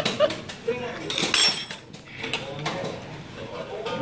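Stainless steel utensils clinking against a metal bowl at a table, with one bright ringing clink about a second and a half in and several lighter clicks.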